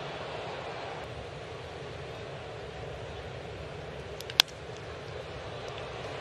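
Steady murmur of a ballpark crowd, broken about four seconds in by a single sharp crack of a bat meeting a fastball and driving it hard on the ground.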